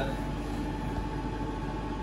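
Steady background whir of commercial kitchen ventilation or air conditioning, with a constant low hum and a faint high steady tone.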